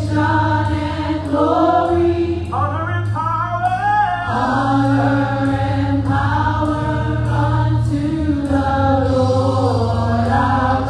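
Gospel praise team of women and a man singing together into microphones, in harmony, over a steady low bass note.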